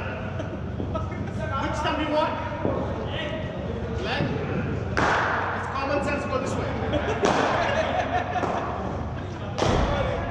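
Sharp knocks of hard cricket balls striking in a large echoing indoor hall, the loudest about five seconds in, again a couple of seconds later and just before the end, over indistinct chatter.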